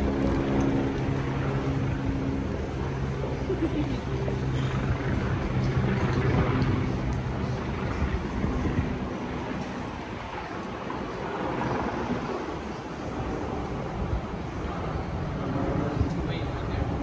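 Busy city street ambience: a steady mix of distant voices and traffic noise. A steady pitched hum runs through the first half and fades out about halfway through.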